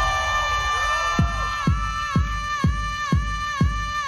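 Dance music playing loud: a held chord of steady tones, joined about a second in by a deep kick drum beating a little over twice a second.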